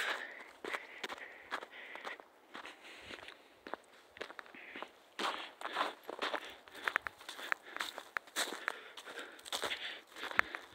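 Footsteps of a person walking over ground patched with snow and dry grass, uneven in rhythm.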